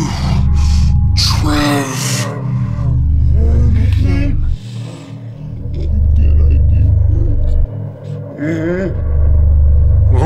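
A deep, loud throbbing rumble that swells and cuts out in long waves of about two seconds each. Over it, men groan and gasp without words.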